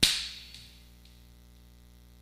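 A single sharp smack right at the start, with a short room echo that dies away within about half a second. After it there is only a steady mains hum.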